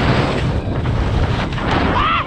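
Wind rushing over an action camera's microphone while skis scrape across thin, slushy spring snow during a fast run through trees. There is a brief squeak near the end.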